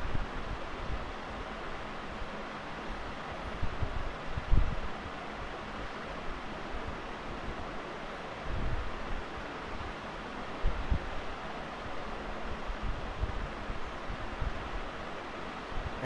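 Steady background hiss from an open microphone, with a few soft low thumps, the loudest about four and a half seconds in.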